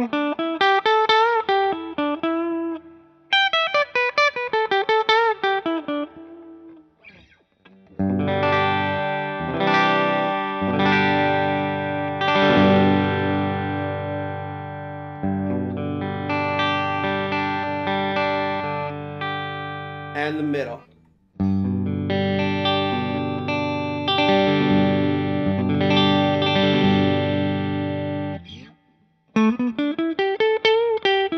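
PRS SE DGT electric guitar, amplified: single-note lead phrases with bends and vibrato, then from about eight seconds in, sustained chords that ring out, with a short break in the middle and another bent lead phrase near the end.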